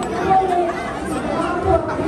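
Indistinct chatter of several voices with crowd babble behind it.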